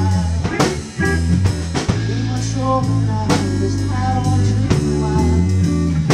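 Live band playing: electric guitar over held bass notes and a drum kit, with sharp drum hits scattered through the passage.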